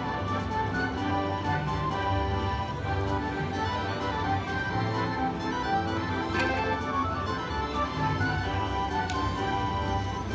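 Buffalo Gold video slot machine playing its win celebration music as the win meter counts up the credits of a bonus-game win.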